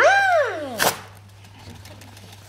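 A woman's drawn-out vocal 'ah', its pitch rising then falling away, followed under a second in by a single sharp crack.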